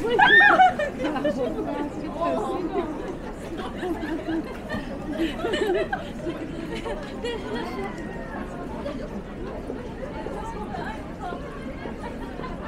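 Chatter of many passersby on a busy pedestrian street. Right at the start a loud, high-pitched voice cries out and falls in pitch.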